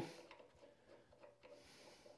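Near silence: faint room tone with a few faint small ticks as a long brake caliper bolt is unscrewed by hand.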